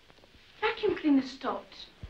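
Speech only: a voice talking from about half a second in.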